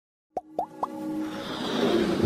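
Animated intro sting: three quick rising plops about a quarter second apart, followed by a swelling electronic music build.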